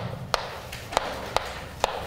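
Chalk striking a chalkboard while writing, four sharp taps about half a second apart.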